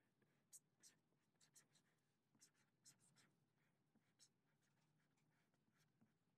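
Faint scratching of a felt-tip marker writing Chinese characters on paper: a string of short, irregular strokes.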